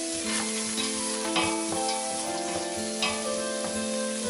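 Diced onion sizzling in melted butter in a stainless steel pot, with a metal utensil stirring it and scraping against the pot a few times, over background music.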